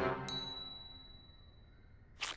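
A single high, bright cartoon 'ding' sound effect about a third of a second in, ringing out for about a second over the fading tail of the music.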